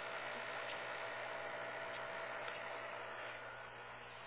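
Steady background hum and hiss with a few faint small clicks.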